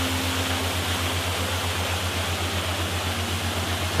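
Steady rushing water, like a waterfall, with a low pulsing hum underneath and a faint held tone in the first second and again near the end.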